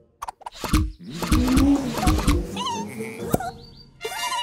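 Cartoon sound effects: a quick run of low thumps and knocks, then warbling squeaky sounds and a sharp click, over soft background music.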